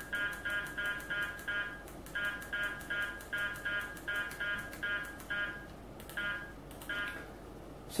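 Uniden R7 radar detector beeping as its menu button is pressed repeatedly to step the K-band limit setting up: quick runs of short electronic beeps, about three or four a second, with brief pauses, stopping about a second before the end.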